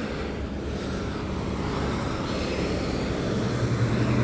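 Road traffic passing close by, a steady rumble of tyres and engines. Near the end a tanker truck's engine hum comes in and grows louder as it draws level.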